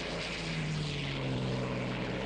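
Propeller engines of a light twin-engine airplane droning steadily in flight.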